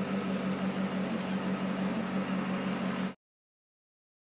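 A steady mechanical hum with a low tone under a background of noise. It cuts off abruptly about three seconds in.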